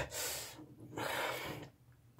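A person's two heavy, noisy breaths, one just after the start and one in the middle, as he recovers from forcing down a drink he finds revolting.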